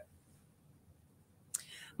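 Near silence, then about one and a half seconds in a short, faint airy hiss begins and runs up to her next words.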